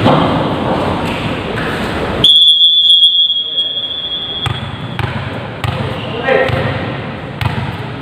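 A referee's whistle blown once: a single steady high blast a little over two seconds in, the loudest sound here, tailing off after under a second. Around it are players' voices and the sharp thuds of a volleyball being hit.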